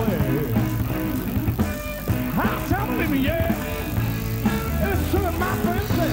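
Blues-rock band playing live in an instrumental passage: a lead electric guitar bending and sliding notes over bass and drums.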